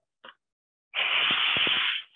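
The pneumatic air motor on a Tri Tool 608SB clamshell lathe is switched on, giving a loud hiss of exhausting compressed air that starts suddenly about a second in and lasts about a second.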